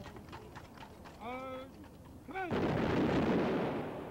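Military funeral firing party: drawn-out shouted commands, then a single rifle volley about two and a half seconds in, a sharp report that rolls off over a second or so.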